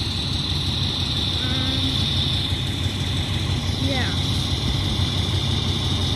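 Fire engine's diesel engine idling, a steady low rumble with a steady high hiss above it.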